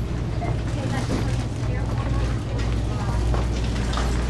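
Shop ambience: a steady low hum with faint, indistinct voices and small clatters.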